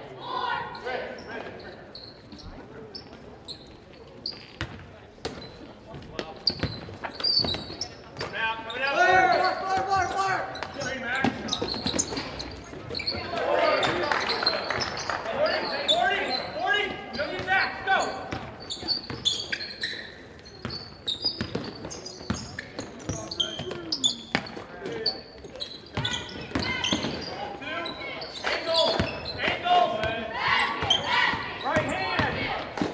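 A basketball being dribbled on a hardwood gym floor during play, with repeated bounces, and untranscribed voices calling out now and then, echoing in the gymnasium.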